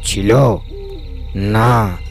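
A man's voice calling out twice, each call long and drawn out, rising then falling in pitch.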